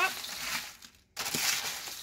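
Dry snack mix of cereal squares, pretzels, Bugles, candy corn and M&Ms being stirred in a disposable aluminium foil pan. The pieces rustle and crunch as they shift and scrape over the foil, with a brief pause about a second in.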